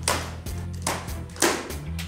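Background music over a few sharp rustles and taps of a cardboard shipping box being handled.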